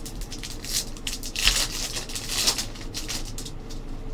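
A stack of hockey trading cards handled by hand: quick papery rustles and flicks as the cards slide against each other, busiest in the middle.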